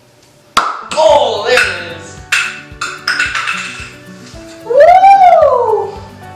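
A sharp pop about half a second in as the cap of a film canister blows off under the pressure of gas from an Alka-Seltzer tablet fizzing in water. Several clatters and excited shouting follow, with one long rising-then-falling yell near the end.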